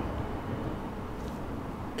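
Quiet, steady background noise with no distinct sounds standing out.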